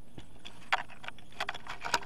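Several sharp, irregular clicks and taps of hard objects being handled on a desk, the loudest near the end.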